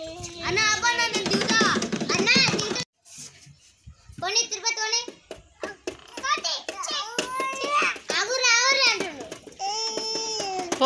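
Children's voices: high-pitched talking and calling out from a toddler and older children. The sound drops out suddenly just before three seconds in, then the voices resume.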